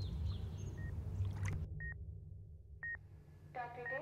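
Low murmur of water from a pool recording. After the sound cuts off, two short electronic beeps about a second apart, then a buzzy electronic sound near the end from a battery-operated surgery board game.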